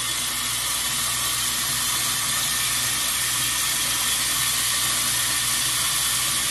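Tap water running steadily into a sink, a continuous hiss.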